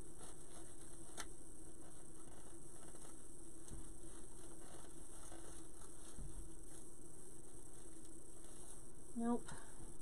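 Faint rustling and a few light clicks as decorations are worked by hand into a mesh-and-ribbon wreath, over a steady low hum. A short vocal sound comes near the end.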